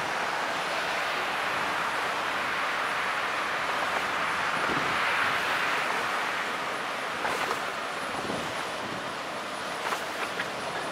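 Passing motor cargo ship's 600 hp Volvo diesel engine and propeller wash: a steady rushing drone that swells to its loudest about halfway through, then eases off as the ship goes by.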